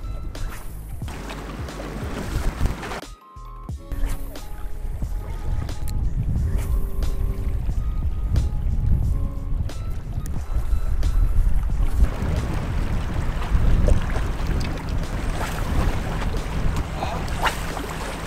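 Wind rumbling on the microphone beside choppy lake water, with background music playing over it.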